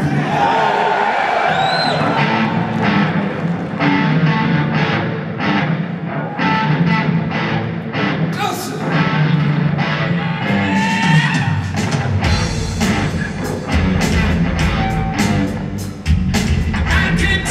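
Live blues-rock band playing in an arena: electric guitar and drum kit, with the bass coming in strongly about twelve seconds in.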